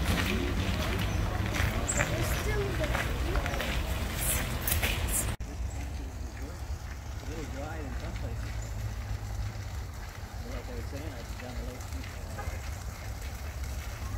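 Indistinct, distant voices over a steady low wind rumble on the microphone, with crisp crunching steps on a gravel and leaf trail through the first five seconds. About five seconds in the sound breaks off abruptly, then goes on quieter with the faint voices.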